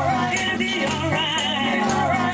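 Live gospel praise music: a church praise team singing with instrumental accompaniment that includes sustained low bass notes. The sung melody wavers with vibrato.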